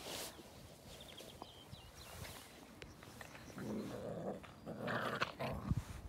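Border collie puppies growling as they play-fight. The first half is quiet, and two short rough growls come in the second half.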